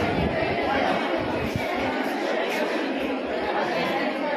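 Indistinct chatter of many people talking at once in a large room.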